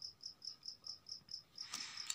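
Faint, steady high-pitched chirping in an even rhythm of about five pulses a second, typical of a cricket.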